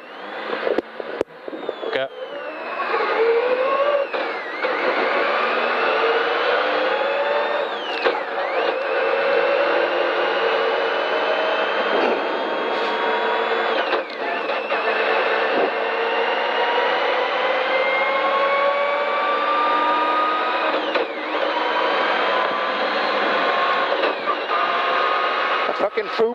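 Rally car engine heard from inside the cabin, accelerating hard through the gears: after a quieter start, the pitch climbs in long pulls of several seconds, dropping sharply at each upshift. The crew believe the clutch is slipping because oil has got onto it.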